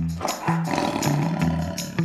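A tiger's roar sound effect, a rough roar lasting most of two seconds, laid over the opening of a music sting with a steady bass line.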